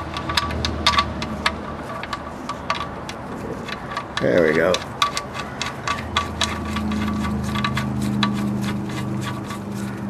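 Light metallic clicks and ticks, several a second, as a magnetic oil drain plug is threaded back into the oil pan by hand. A short hum of a voice comes about four seconds in, and a steady low hum starts about two-thirds of the way through.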